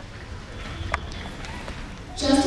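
Quiet auditorium room tone with a faint murmur and two sharp knocks, one at the start and another about a second later.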